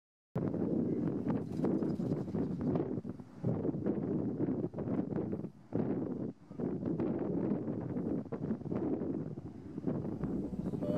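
Wind buffeting the microphone: a low, uneven noise that swells and fades in gusts, dipping briefly about three, five and a half and six seconds in.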